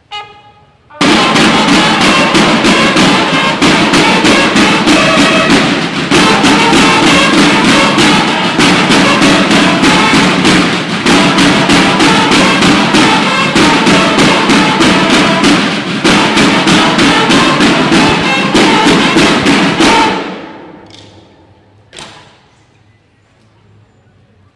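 Banda de guerra of field drums and bugles playing a loud march together, steady drumbeats under held bugle notes; it starts just after a brief call about a second in and stops about twenty seconds in, fading out. A single sharp knock follows near the end.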